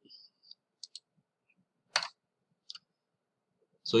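A few faint, short clicks and one sharper, louder click about halfway through, in an otherwise quiet room; a voice begins right at the end.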